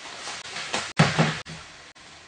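Several knocks and bumps in a small room, the loudest a sharp thump about a second in.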